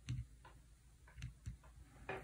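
Faint clicks of an HP-15C Limited Edition calculator's keys being pressed, the ON key switching it off: four or five short clicks, the first just after the start the loudest.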